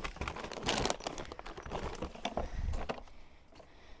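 Things being packed into a hard plastic storage box: a run of light knocks, clicks and rustles that dies down about three seconds in.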